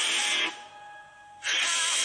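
Pop music with singing from a radio station stream, cutting out abruptly for about a second partway through and then coming back at full level.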